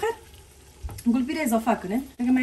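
Wooden spoon stirring a thick red sauce frying in a stainless steel pressure cooker, with a faint sizzle and a single knock about a second in.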